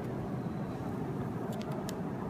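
Steady background noise of the room, a low even hiss, with a few faint light clicks late on.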